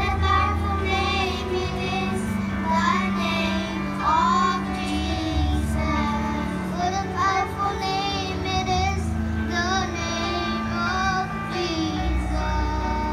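A group of young children singing together into microphones over recorded backing music with a steady bass line, amplified through loudspeakers.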